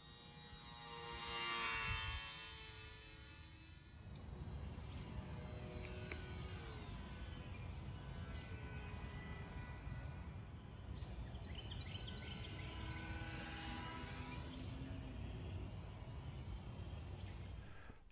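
A short musical sting swells and fades over the first four seconds. It is followed by faint outdoor ambience: a steady low rumble of wind on the microphone and a few scattered high chirps, like distant birds.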